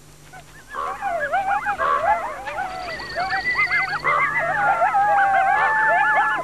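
Several coyotes yipping and howling together, many wavering voices overlapping. The chorus starts about a second in, and longer drawn-out howls come in the second half.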